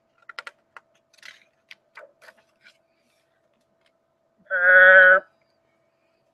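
A few light clicks and rustles of a picture-book page being turned, then, about four and a half seconds in, a woman makes one loud, drawn-out burp sound lasting under a second.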